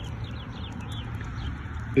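A small bird chirping in a quick series of short falling notes, faint behind a steady low rumble.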